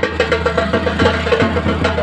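Loud procession music with drums beating a quick, even rhythm over a steady low hum.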